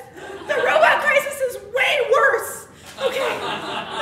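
A woman's voice, excited talking broken up with chuckling laughter.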